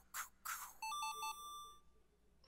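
A cartoon character's breathy "choo-choo-choo" puffs, then an electronic game-style jingle: three quick beeps followed by a held high tone lasting about half a second.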